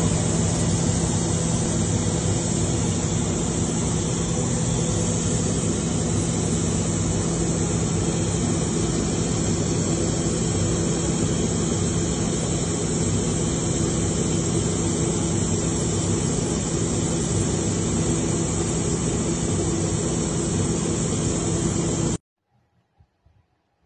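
Aircraft engine noise heard from inside the cabin of a patrol aircraft in flight: a steady rushing drone with an even low hum, unchanging throughout.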